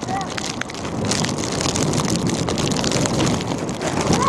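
Wind rushing over the camera microphone, growing louder about a second in, with rain on the microphone. A brief shout is heard at the very start.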